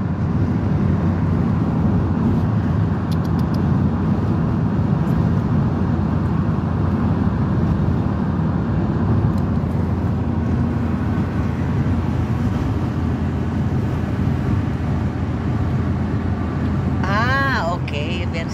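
Steady engine and road noise heard from inside a truck cab cruising at motorway speed. A brief voice comes in near the end.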